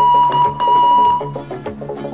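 Morse code beeping: a single steady tone keyed into two long beeps that stops about a second and a quarter in, over background music with plucked strings.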